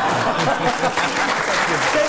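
Studio audience applauding, with voices over the clapping.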